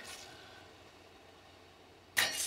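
Near silence: faint room tone of a theatre hall, with the echo of a voice dying away at the start.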